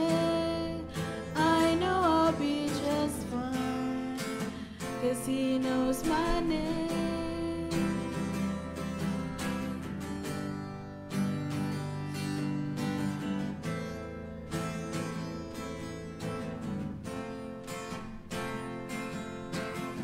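A worship song sung by girls' voices with a strummed acoustic guitar. The singing is clearest in the first few seconds; after that, steady guitar strumming carries on between sung lines.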